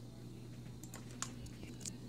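A few faint clicks at a computer in the second half, over a steady low hum.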